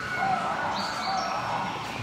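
Small birds chirping in woodland: a few short, high whistled notes over a steady background.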